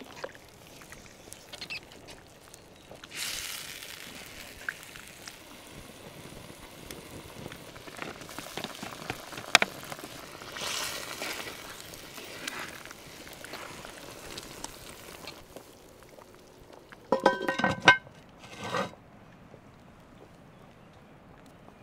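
Braising liquid simmering in a cast-iron Dutch oven over a wood fire, with a wooden spoon working through it and cherry tomatoes plopping in around the middle. Near the end the cast-iron lid goes on with a short, ringing metal clank and rattle.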